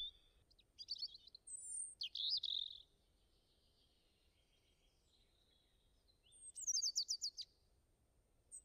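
Songbird singing in several bursts of high chirps and quick warbling trills, the loudest a rapid trill near the end.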